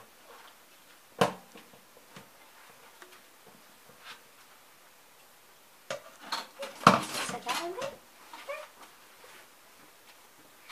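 Silverware being hand-washed in a stainless steel sink: one sharp metal clink about a second in, then a burst of clattering around seven seconds.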